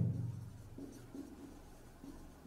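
Faint strokes of a marker pen writing on a whiteboard, a run of short scratches about a second in.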